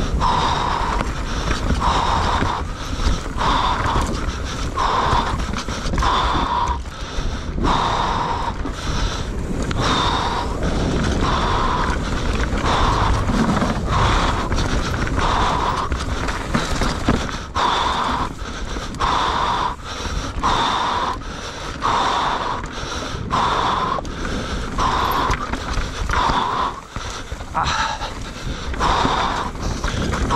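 Mountain-bike rider panting hard during a race run, a heavy breath about once a second, over the steady rumble and rattle of the bike rolling fast down a dirt forest trail.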